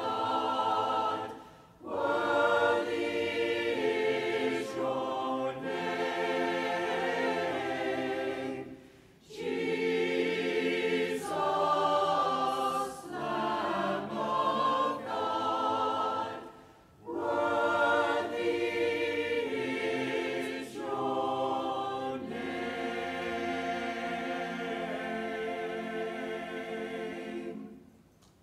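Mixed church choir of men's and women's voices singing in phrases with short breaks between them, closing on a long held chord that stops just before the end.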